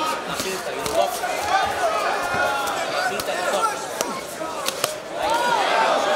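Arena crowd voices shouting and calling out over a cage fight, with several sharp thuds of gloved punches landing.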